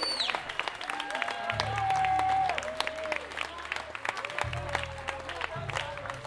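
Live band playing, with long deep bass guitar notes and a held melody line that bends up and down, over audience applause and clapping.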